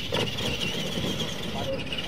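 Radio-controlled monster trucks racing on a dirt track: a steady high whine from their electric motors and gearing over a rougher, lower noise.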